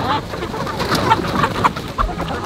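A flock of free-ranging chickens clucking and calling, with many short, sharp calls overlapping.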